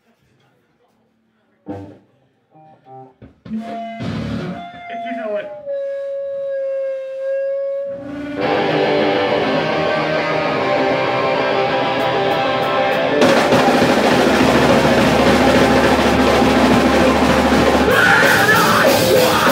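A punk band starting its song live in a small room. First come a few scattered drum and guitar sounds, then a single held electric guitar note that sags slightly in pitch. About eight seconds in, the full band comes in loud with distorted guitars, bass and drums, and it grows denser about five seconds later.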